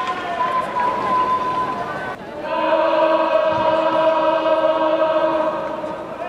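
A large group of voices chanting in unison: shorter calls at first, then, after a brief break, one long held call.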